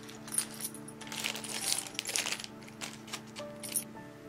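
Hands rustling the packaging of a ribbon-tied fabric bundle as it is unwrapped: a crinkly card sleeve and ribbon handled in several short bursts, over soft background music.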